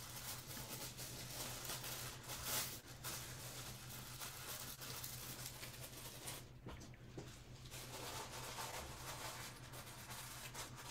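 Quiet room tone: a steady low hum with faint, scattered handling noises, a slightly louder one about two and a half seconds in.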